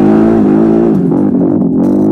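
ATV engine and exhaust under changing throttle, its pitch dipping and rising several times as the rider feeds the gas on and off.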